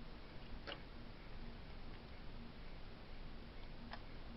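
Faint, regular ticking, roughly two ticks a second, over a steady room hiss. Two light, sharp clicks come about a second in and near the end.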